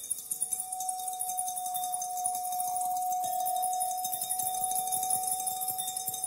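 Water-filled wine glasses tapped with thin rods, giving light tinkling glassy notes. Underneath runs one steady held high note that shifts slightly in pitch about halfway through.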